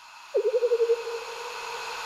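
Synthesized intro sound: a hiss swelling steadily, with a low warbling tone entering about a third of a second in that wavers quickly in pitch at first, then holds steady.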